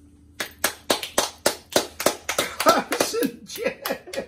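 Hands clapping in applause, sharp claps about three to four a second starting just under half a second in, with laughter joining in the second half.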